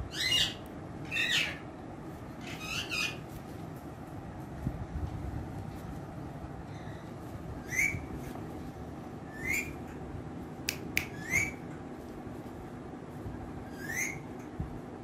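Indian ringneck parakeet giving short, sharply rising squawks: three in the first three seconds, then one every second or two from about eight seconds in. Two sharp clicks come just before the squawk near eleven seconds.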